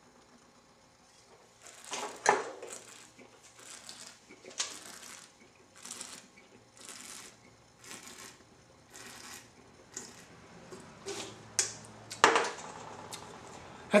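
A wine taster sipping red wine and drawing air through it in his mouth, a run of short slurping hisses, followed near the end by a louder burst as he spits into a bucket.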